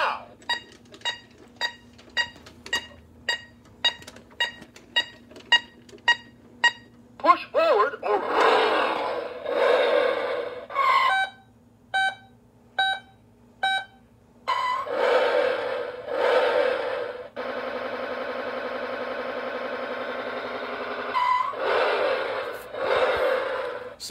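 Electronic sound module of a Road Rippers 'It Comes Back' Hummer H2 toy playing through its small speaker: a run of short sharp beeps at about two a second, then bursts of electronic sound effects, four separate beeps, and a steady buzzing tone lasting about four seconds, with more effects near the end.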